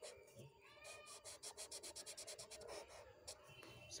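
Black felt-tip marker scribbling quickly back and forth on paper while filling in an area: faint strokes at about nine a second, from about one to three seconds in. A faint, short wavering tone sounds about half a second in.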